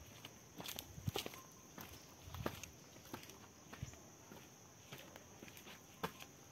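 Faint footsteps on a dry-leaf-strewn dirt path: irregular crunches and scuffs, a few a second.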